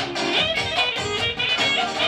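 Band playing kyuchek dance music: a fast, steady beat under a bright melodic lead.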